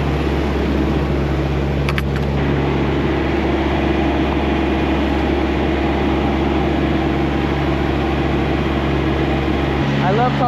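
Steady drone of an idling diesel engine, with a couple of faint clicks about two seconds in.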